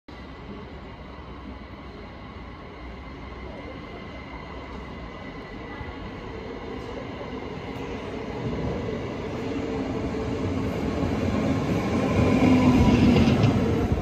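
NS double-deck electric passenger train pulling into a station platform, its rumble growing steadily louder as it nears and peaking shortly before the end, with a thin steady whine over it.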